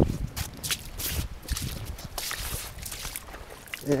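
Footsteps crunching and scuffing irregularly on rocky dirt, with scattered small clicks and rustles.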